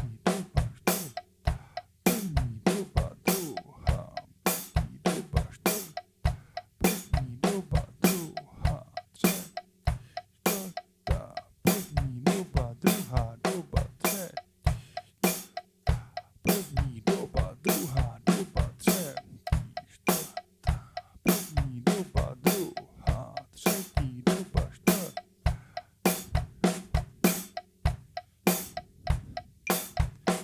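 Pearl drum kit played in an even practice groove: quick strokes on the snare and toms over bass drum kicks, with the toms ringing after each hit.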